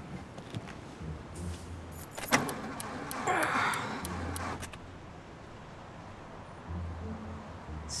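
Ignition keys jangling and clicking as a car's key is turned, followed by a short mechanical whirr about three seconds in, but the engine does not start. The car will not fire because of a broken spark plug wire.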